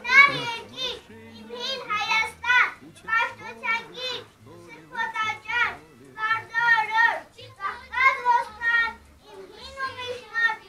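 A young child speaking in a high voice, in short phrases with brief pauses between them.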